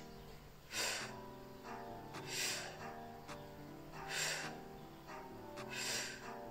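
Soft background music with held, steady notes, and a man breathing audibly over it, about four breaths each a second and a half to two seconds apart.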